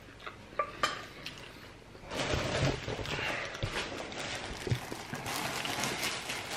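A few light clicks of dishes and cutlery. About two seconds in, a steady rustling, scraping noise with occasional knocks starts.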